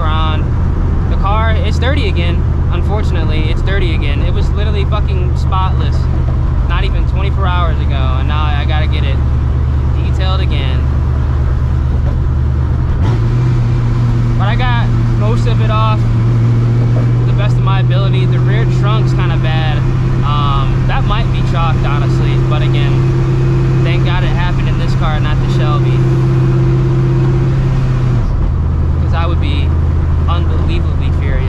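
Supercharged 5.4-litre two-valve V8 of a 1999 Mustang GT cruising, a steady low drone heard from inside the cabin. The engine note steps up in pitch about 13 seconds in and drops back near the end. A voice runs over it throughout, its words indistinct.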